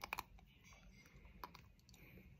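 Lindt dark chocolate squares being bitten and chewed close to the microphone: a quick run of three crisp crunches at the start, another about a second and a half in, and a few faint ones near the end.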